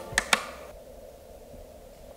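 Two sharp clicks in quick succession as the lights are switched off, followed by a faint, quiet hush in the darkened cave.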